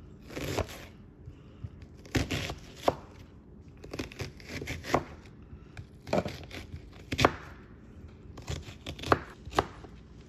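Serrated utility knife cutting a red onion into chunks on a plastic cutting board: short bursts of cutting strokes every second or so, several ending in a sharp knock of the blade on the board.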